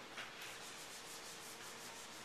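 Faint, quick rubbing strokes against a whiteboard.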